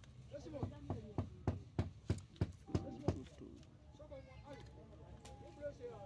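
A quick, even run of about nine sharp knocks, about three a second, for two to three seconds, then stopping; faint voices carry on behind.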